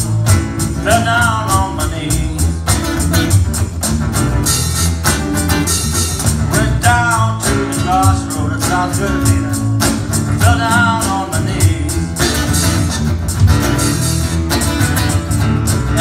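Live blues band playing: an acoustic-electric guitar strummed and an electronic drum kit keeping a steady beat, with a man singing in short phrases.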